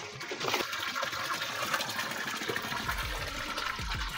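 Water pouring from a pipe into a concrete cattle trough, a steady splashing rush that comes up in the first half second.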